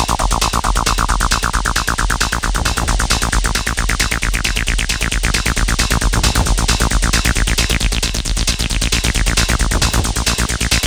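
Techno track: a fast pulsing synth line over a steady low bass. The synth brightens over the first five seconds or so as its filter opens, then darkens again toward the end.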